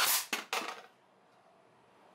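Pneumatic brad nailer fired three times in quick succession, three sharp shots within about half a second, driving brads into the wood.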